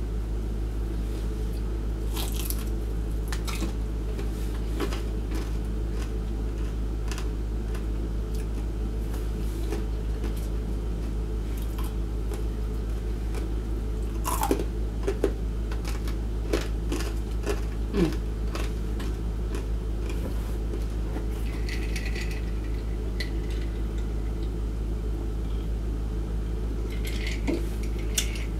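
Close-miked chewing and crunching of crispy fried chicken, heard as scattered short crackles and clicks over a steady low hum. Sharper clinks near the end come from a glass jar being handled.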